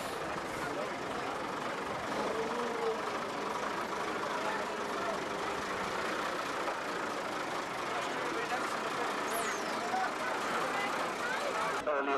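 Heavy recovery truck with its engine running as it drives past, with people talking around it.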